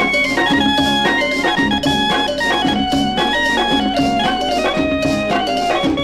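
Instrumental break of a 1970 Pakistani film song played from a 45 rpm record: a melodic lead line moving note by note over a steady drum beat, with no singing.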